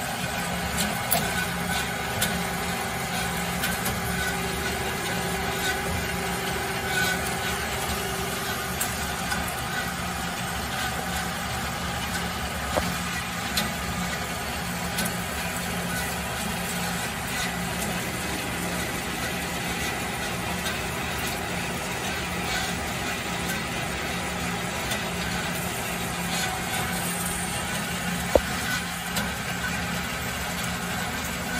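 DoAll CJ-410A automatic horizontal bandsaw running steadily with a constant mechanical hum, broken by occasional light clicks and one sharp click near the end.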